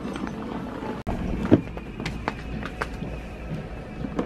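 Small plastic wheels of a child's rolling Hot Wheels case rumbling over a hard tiled floor, with scattered light clicks and footsteps, under faint background music.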